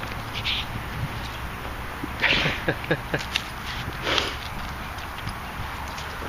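A dog sniffing and snuffling with its nose down a hole in the soil. There are sharp noisy sniffs about two seconds in and again about four seconds in, with a few brief grunting snuffles between them.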